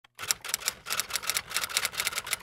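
Typewriter sound effect: a fast run of key clacks, about seven a second.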